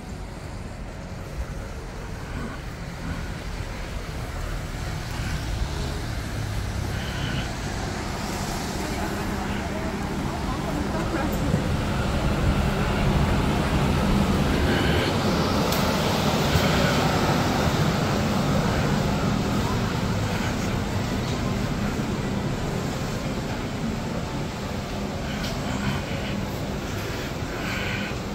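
Busy urban ambience: a steady rumble like traffic with indistinct background voices, swelling louder toward the middle and easing off again.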